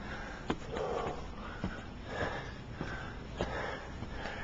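A person breathing hard and fast close to the microphone while climbing wooden stairs, with a few sharp knocks of footfalls on the wooden treads.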